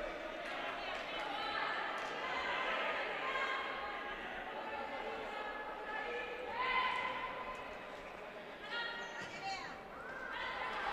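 Indoor futsal play echoing in a sports hall: the ball being kicked and bouncing on the court, with short squeaks and players' calls scattered throughout.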